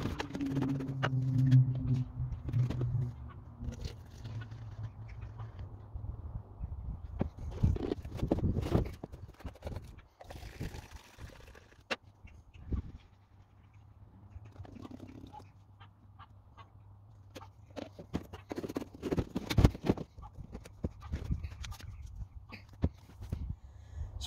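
Liquid poured from plastic jugs into a plastic spray bottle and a small measuring cup, with the jugs and bottles knocked and set down on the wooden floor in scattered knocks.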